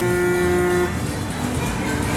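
A horn toots once, a single steady note lasting just under a second, over fairground music.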